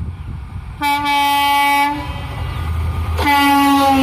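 Horn of a WDP-4D diesel locomotive sounding two blasts of about a second each, the second dropping in pitch as the locomotive passes. The diesel engine's low rumble grows louder underneath as the train approaches.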